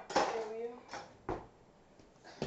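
A short wordless vocal sound, then two sharp knocks about a third of a second apart, about a second in.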